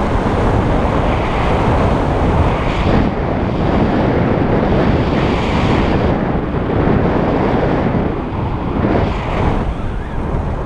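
Loud wind rushing over the camera microphone of a paraglider in flight, an unbroken buffeting with a deep rumble, heavier while the wing is in a steep banked turn.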